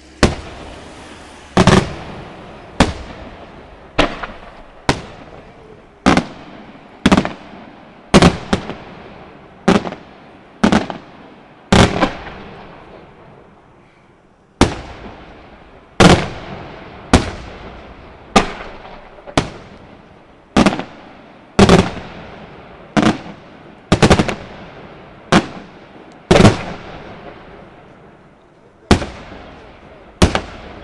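Aerial firework shells bursting one after another, about once a second: sharp bangs, each dying away over about a second, with a pause of about three seconds near the middle.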